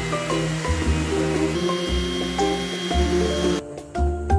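Background music over an electric random orbital sander running steadily on a scrap-wood board. The sander cuts off abruptly about three and a half seconds in while the music carries on.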